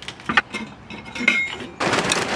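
A few metal clinks and clanks as the grate and stone are lifted out of a ceramic kamado grill, then, near the end, a loud rush of charcoal pieces tumbling from a paper bag into the grill's firebox.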